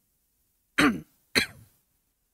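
A man clearing his throat twice, two short voiced sounds about half a second apart, the pitch falling in each.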